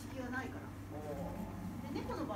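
Conversational speech only: two people talking on a stage, with a low steady hum beneath.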